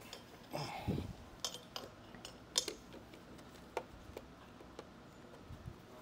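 Scattered light clicks and clinks as the WHILL Ri scooter's frame and fittings are handled by hand, with a soft low thump about a second in.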